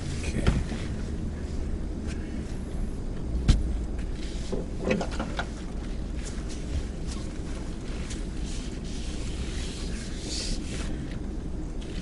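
A 2018 Ford F-150 with a 5.0L V8 driving slowly off-road, heard from inside the cab: a low steady rumble of engine and tyres. A sharp knock comes about half a second in, and a louder one about three and a half seconds in, with a few smaller knocks around five seconds.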